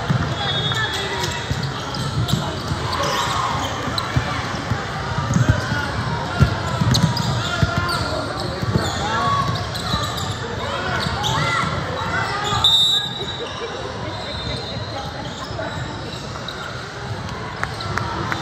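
Basketball game sounds in a large gym: a basketball bouncing on the hardwood court amid indistinct shouts and chatter from players and spectators, with the hall's echo.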